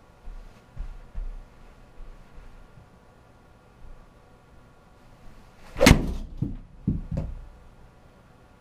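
An Adams MB Pro Black 6-iron strikes a golf ball off a hitting mat about six seconds in: one sharp crack, the loudest sound. A few dull thumps follow within the next second and a half, and softer low thumps come in the first couple of seconds.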